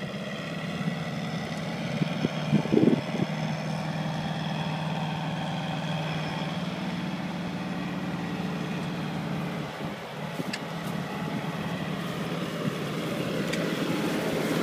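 M76 Otter tracked carrier's engine running steadily as it drives, with a few loud knocks about two to three seconds in. It grows louder near the end as the vehicle comes close.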